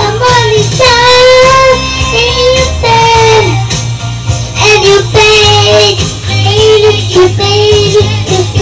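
A young girl singing into a microphone over loud backing music with a steady bass line; her voice breaks off briefly about halfway through.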